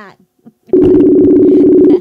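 Telephone ringback tone of an outgoing call, the line ringing unanswered: one steady two-pitch ring starting under a second in and stopping at the end.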